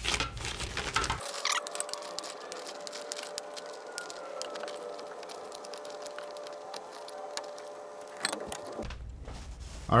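Rapid rustling and clicking of a Lastolite collapsible reflector's fabric being clipped onto its frame, sped up, over a soft sustained music bed. Speech resumes right at the end.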